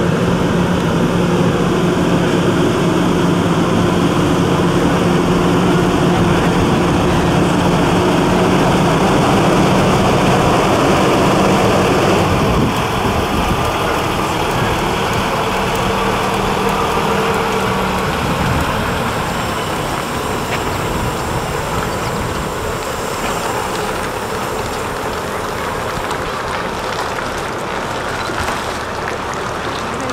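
A semi-truck's diesel engine runs at a slow crawl as it passes close by: a steady low drone that eases off about eighteen seconds in, leaving a softer rumble of slow-moving vehicles.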